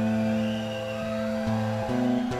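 Live band playing a slow instrumental intro: fingerpicked acoustic guitar under long held keyboard notes, the chords changing every half second or so.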